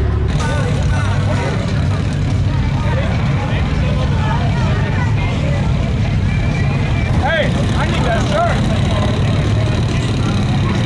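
Idling off-road vehicle engines with a crowd of voices chattering over them.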